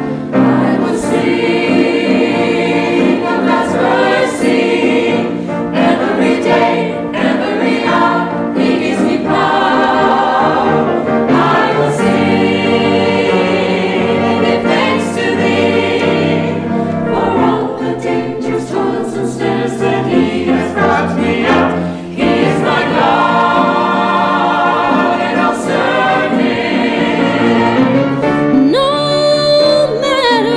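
Mixed church choir of men and women singing a gospel song together, steady and full throughout.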